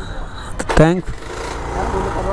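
A man's short spoken call about a second in, over a steady low rumble.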